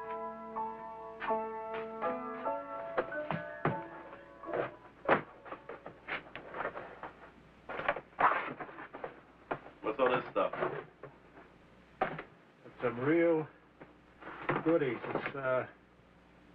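Piano music that ends a couple of seconds in, followed by a run of knocks, taps and rustles as a cardboard box is handled and its flaps are opened. In the second half a voice mutters indistinctly.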